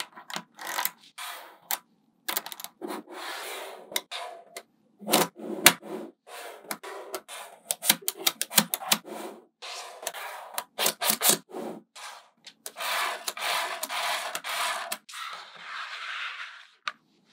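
Small magnetic balls clicking sharply together as they are snapped into place, in quick irregular runs of clicks. Between the clicks, rubbing and scraping as ball panels are slid and pressed on a flat surface, the longest stretch of it near the end.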